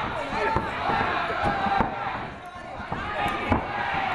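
Scattered sharp thuds of MMA-gloved punches and feet landing on the ring canvas during a close exchange, about half a dozen in four seconds, under voices shouting from the corners and crowd.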